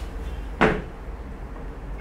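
A single sharp clink of a metal spoon against a dish, about half a second in, over a low steady hum.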